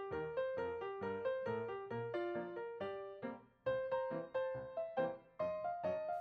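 Background music: a light melody of short keyboard notes, several a second, with a brief break about halfway through.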